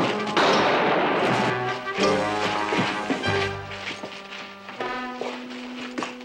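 Dramatic orchestral film-score music, with a loud burst of crashing and thumps in the first two seconds as a man is knocked out.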